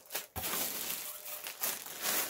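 A clear plastic packaging bag crinkling as it is handled: a couple of sharp rustles at the start, then a continuous rustle.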